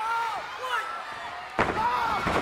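A few short yells, then about one and a half seconds in a loud slam of a pro wrestler landing a leap off the top rope onto his opponent in the ring, followed by smaller thuds and louder crowd noise.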